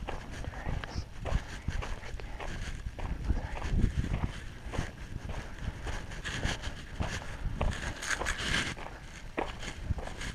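Footsteps crunching on gravel, a steady walking pace with irregular crunches.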